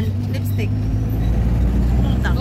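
A vehicle's engine and running gear making a steady low rumble, heard from inside the cabin.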